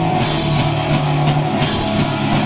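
Live rock band playing: electric guitars and bass over a drum kit, with cymbals crashing in shortly after the start and easing off near the end.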